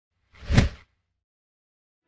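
A single whoosh sound effect for a logo animation, swelling and dying away within about half a second, with a low thud at its peak.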